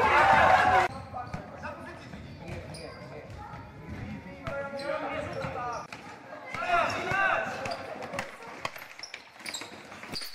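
Basketballs bouncing on a sports-hall floor, with children's voices shouting on the court; a loud burst of shouting comes in the first second and more calls follow about halfway through.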